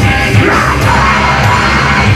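Live heavy rock band playing loud, with electric guitars and drums under yelled vocals.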